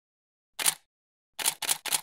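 Camera shutter clicks: a single shot, then after a pause a quick run of three more at about four a second.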